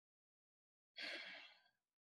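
A man's short, quiet breath about a second in, otherwise near silence.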